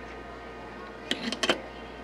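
Three or four light, sharp clicks in quick succession about a second in: the modified water heater thermostat being set down on the workbench. Under them runs a steady low hum.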